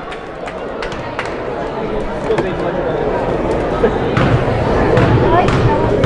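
Basketball crowd in a gymnasium: many voices chattering and calling out at once, growing steadily louder, with a few sharp knocks scattered through it.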